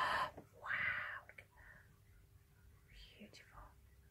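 A person's soft, breathy whispering: a short whispered phrase about a second in, and a fainter one near the end.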